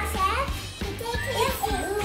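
Young children's voices, chattering and exclaiming, over background music with a steady bass.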